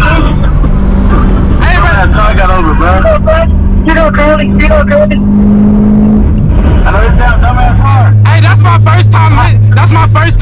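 C6 Corvette V8 heard from inside the cabin at speed, with a drone that climbs slowly in pitch for about six seconds, then settles into a lower, steady drone near the end. Excited voices and laughter run over it.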